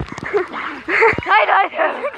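Young people's voices laughing and calling out in short wordless bursts, with a few sharp splashes of water.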